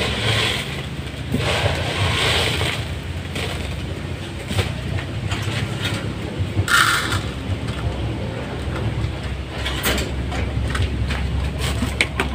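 Scraping, knocking and rustling as pigeon feeders are handled at a wire cage, with a short louder rustle about seven seconds in and a few clicks near the end, over a steady low rumble.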